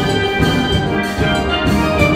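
Steel pan ensemble playing, many pans ringing pitched notes in a dense, steady rhythm over low bass pans.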